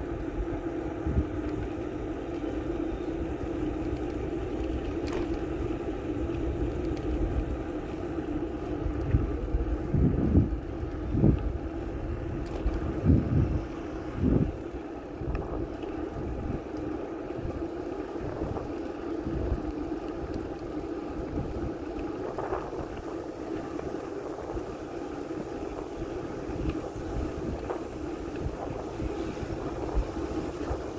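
Wind buffeting the microphone of a bicycle-mounted phone as the bike rolls along a paved road, with a steady hum underneath. There is a cluster of low thumps about a third of the way through.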